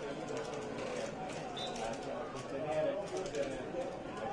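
Open-air football stadium ambience: faint, distant voices from the stands and the pitch over a steady background hiss.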